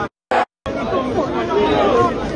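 Crowd chatter: many voices talking over each other at once, starting suddenly under a second in after two brief clipped snippets.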